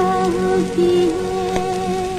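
Music on a Radio Ceylon broadcast recording: a long held melodic note with vibrato that dips briefly in pitch near the start, over background noise.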